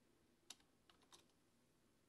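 A few faint computer-keyboard keystrokes over near silence, the first, about half a second in, the loudest.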